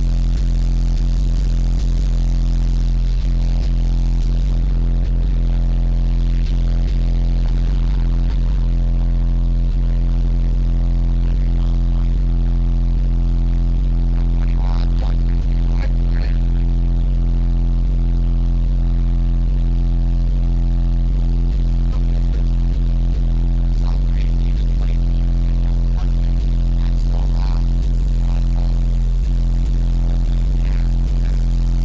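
Chrysler Sebring's competition subwoofer system playing bass-heavy music at extreme level during a 30-second SPL average run, metering around 150 dB. It is heard from outside the car as a steady, very loud low bass that barely changes.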